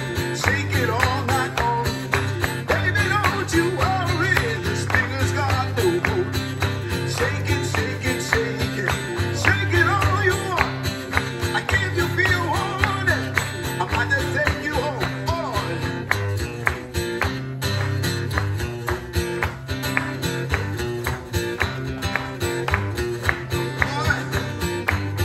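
Live band playing an instrumental break: a steady strummed guitar rhythm over a repeating bass line, with a gliding lead melody over it that fades back about two-thirds of the way through.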